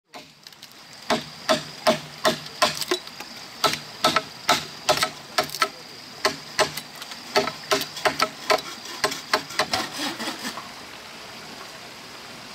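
Machete chopping into a green bamboo pole: a quick run of sharp knocks, about two to three a second, that stops a little before the end.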